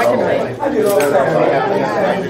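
Overlapping chatter of several people talking at once.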